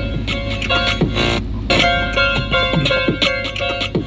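Music with a steady beat playing at high volume from a small portable Bluetooth speaker, the Kove Commuter, in a car cabin.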